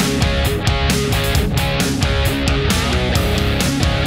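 Rock music: electric guitar strumming held chords over bass and drums, with a steady beat.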